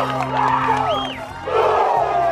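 Baseball players and crowd shouting and cheering in celebration of a home run, with one high whoop about a second in, over a music bed with steady low tones.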